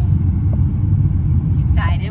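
Steady low rumble of road and engine noise inside a moving car's cabin. A voice starts near the end.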